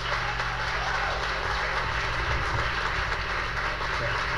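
Audience applauding steadily in a hall, with a steady low hum underneath.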